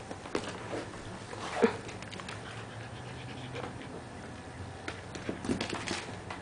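An 11-week-old Scottish Terrier puppy panting and scuffling as it wrestles a stuffed toy, its claws clicking on a wooden floor. A short, louder sound comes about one and a half seconds in.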